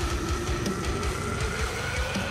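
Heavy metal music: a long held note over fast, dense drumming.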